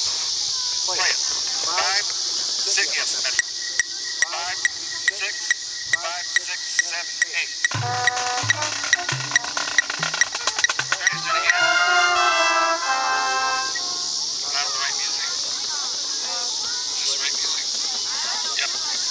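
Sharp clicks keep time at about two a second, and about halfway through a few seconds of marching band music with low brass notes join in before stopping. Voices and a steady high hiss run underneath.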